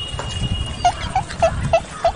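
An animal calling: five short, evenly spaced calls, about three a second, starting a little under a second in.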